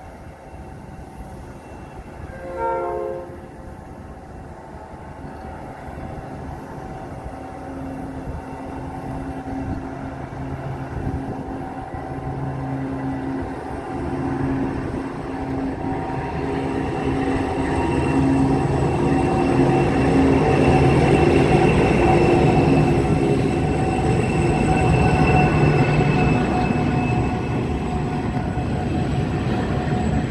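Diesel freight train passing, with the rumble of wagons on the track throughout. A short train horn blast sounds about three seconds in. From about a third of the way through, a diesel locomotive's engine hum grows steadily louder as it draws near, loudest around two-thirds of the way in.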